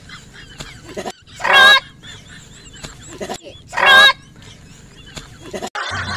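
Goose honking: two short, loud honks about two and a half seconds apart.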